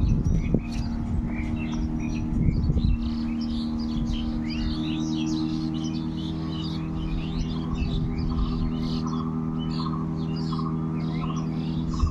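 Many small birds chirping continuously in quick, overlapping calls, over a steady low droning hum that is the loudest thing heard; a short run of higher tonal notes joins the hum near the end.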